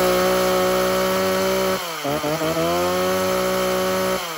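Stihl 021 two-stroke chainsaw running strong at high revs; about halfway through the engine speed dips sharply and climbs back up within about half a second.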